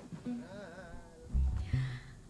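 A faint voice humming a short wavering tune, followed by a few low thuds near the end.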